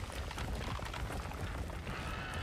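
Steady low rumbling noise with faint scattered crackles, from the animated episode's soundtrack.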